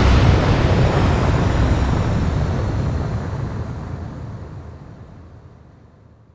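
Outro sound effect closing an electronic rap track: a long, noisy rumble, heaviest in the bass, fading out steadily over about six seconds.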